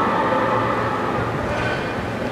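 Steady rumbling background noise of an athletics stadium, with a faint hum of higher tones and no distinct event standing out.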